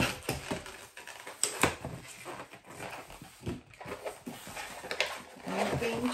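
Latex twisting balloon squeaking and rubbing under the hands as it is stretched and handled, with a few sharp clicks from the latex.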